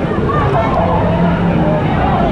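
Lazy-river water sloshing and churning around a camera held at the waterline, a steady rushing noise, with the voices of people nearby mixed in.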